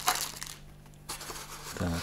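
Cardboard packaging being handled by hand: rustling and scraping of the moulded box insert, with a sharp click at the start and a quieter stretch in the middle.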